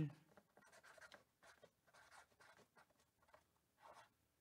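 Near silence, with faint scattered scratching and rustling noises from handling on a tabletop.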